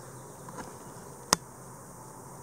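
Quiet room background with a single sharp click a little over a second in.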